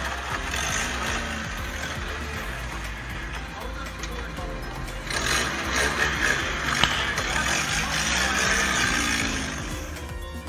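A car moving with its front bumper dragging on the pavement: a rough scraping noise that gets louder about halfway through, with one sharp click near the end, over voices and background music.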